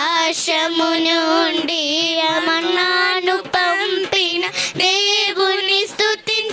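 Girls singing a devotional worship song into microphones, one melody line with long held notes and vibrato, broken by short breaths between phrases.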